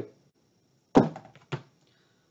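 A single sharp plastic thunk about a second in, followed by a few lighter clicks: disc golf discs knocking together as one is put down and the next is taken from the bag.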